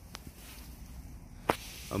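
Handling noise: a faint rustle with one sharp click about one and a half seconds in, as the camouflage backpack is brought into view.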